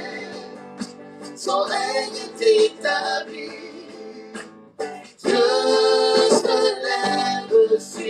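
Live worship song: a male lead voice and female backing singers singing phrases over instrumental accompaniment, with a short lull just before the halfway point.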